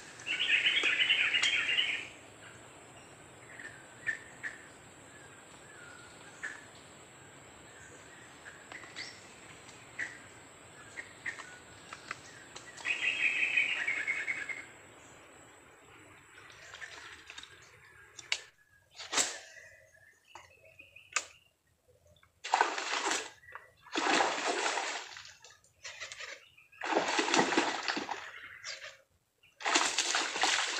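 A fishing line whizzing off a casting reel during a lure cast, a buzzy whir of about a second and a half, heard near the start and again about 13 s in. In the last third come several short, loud rushes of splashing water.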